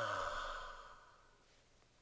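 A man's long voiced sigh, falling in pitch and trailing off into a breathy exhale that fades out about a second and a half in.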